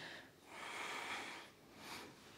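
A woman's audible breath through the nose: a long exhale of about a second, then a short breath near the end, taken with the effort of swinging her legs up overhead.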